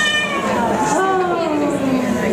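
Koto being played: a plucked note whose pitch bends smoothly downward, then a new note struck about a second in that also slides down in pitch over the next second.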